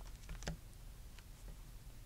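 Faint clicks and light handling noise of a clear-stamp set in its plastic sleeve being set down on a tabletop, mostly in the first half second, then quiet.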